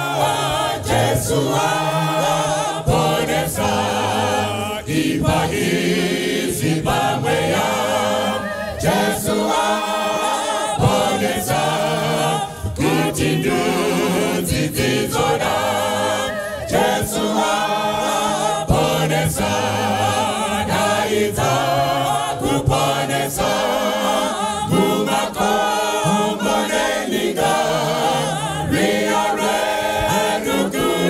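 A mixed choir of men and women singing a gospel song, with lead voices on microphones in front.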